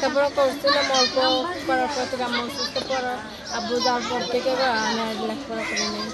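Speech only: a young woman's voice talking steadily.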